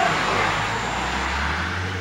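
A road vehicle going by outside: a steady rushing noise with a low rumble that builds toward the end.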